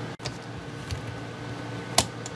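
Steady background hum with a few faint ticks, then one sharp metallic click near the end as the mainspring retaining clip on the antique Seikosha clock movement is pushed back into place.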